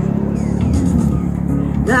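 Backing track of a pop song playing through a small street amplifier, low steady bass and chords growing louder. Near the end a singer's voice comes in through the microphone, sliding up in pitch.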